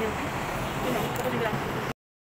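Steady street traffic noise with faint voices in the background, cutting off suddenly just before the end.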